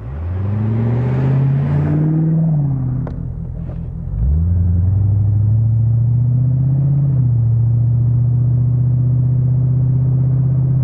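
A 1991 Corvette convertible's 5.7-litre V8 accelerating: the revs climb steeply, then drop about two and a half seconds in. Just after four seconds it gets louder and climbs again, then settles into a steady cruising drone with a brief rise and fall near seven seconds.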